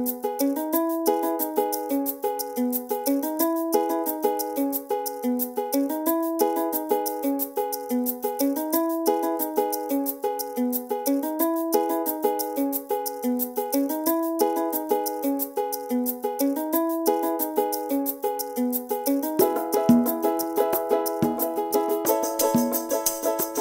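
Background music: a light, bright tune repeating a short melodic phrase about every two seconds over a quick, even ticking beat. Lower notes join near the end and fill it out.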